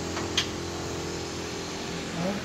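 An industrial machine running with a steady motor hum, and one sharp click about half a second in.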